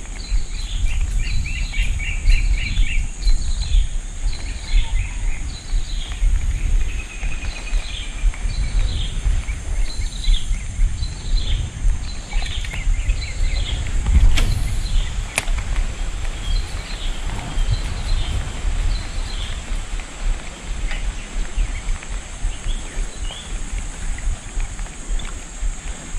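A bird calling over and over in short, quick chirps, about two a second at first and more sparsely later, over a steady high whine and a loud low rumble. One sharp click about fifteen seconds in.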